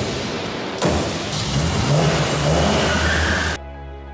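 Classic Mercedes-Benz SL roadster's engine, just hotwired, revving on a film soundtrack with its pitch rising twice in quick blips. About three and a half seconds in it cuts off abruptly to steady music.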